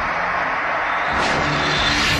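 Documentary soundtrack sound design: a loud, steady rushing noise like a whoosh or a jet passing, swelling brighter near the end, with a faint low hum coming in about halfway.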